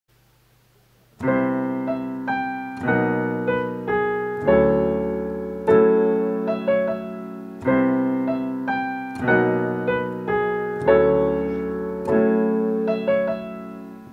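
Digital stage piano playing a slow run of jazz chords, each struck and left to ring and fade before the next. It starts about a second in.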